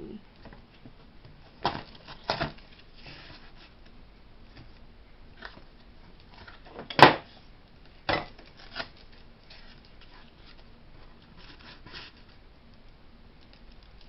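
Ceramic figurine pieces being handled and shifted on a cardboard sheet: scattered light knocks and scrapes, with one sharper knock about seven seconds in.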